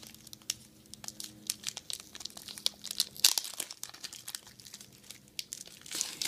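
Thin clear plastic bag crinkling in irregular sharp crackles as a stack of trading cards is worked out of it, with a louder crackle about three seconds in.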